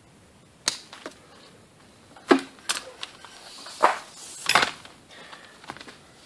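A string of irregular sharp knocks and clacks: a metal-backed door window weatherstrip and a snap-off utility knife being handled and set down on a diamond-plate steel workbench. The loudest come a little after two seconds and near four seconds.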